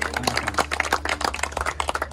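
A small group clapping, quick irregular hand claps, over a steady low hum.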